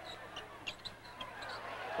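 Sounds of play on a hardwood basketball court: short, high sneaker squeaks and a basketball bouncing, over a low, even arena background.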